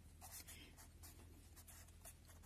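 Felt-tip marker writing on paper: faint, short scratching strokes one after another.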